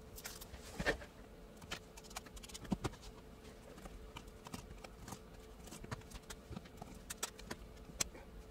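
Faint scattered clicks and taps of hands taking apart a small handheld spectrum analyzer: a USB cable pulled out, tiny case screws turned out with a small screwdriver and set down, and the plastic front bezel lifted off. The sharpest clicks come about a second in and near three seconds, over a faint steady hum.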